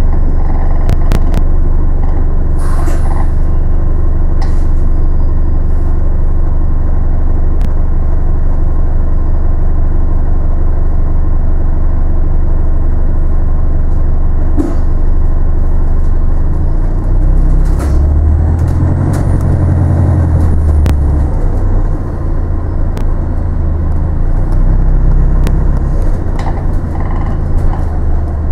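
Cabin sound of a London double-decker bus on the move: a steady low engine and road rumble with a few sharp clicks and rattles. The rumble swells louder about two-thirds of the way through, eases, and builds again near the end.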